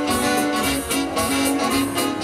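Big band playing a swing-style jazz tune live, an instrumental passage: the saxophone section holds notes over drums and keyboard, with a steady beat of cymbal strokes.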